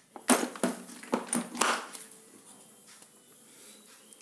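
Hard plastic tool cases being shifted and handled on a tiled floor: several sharp knocks and a scrape in the first two seconds, then faint handling noise.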